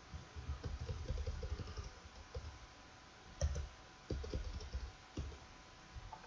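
Computer keyboard keys pressed in a quick run of keystrokes for the first two seconds, then a louder click about three and a half seconds in and a few more keystrokes after it.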